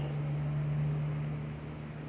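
A steady low hum with a faint hiss behind it, easing off slightly towards the end.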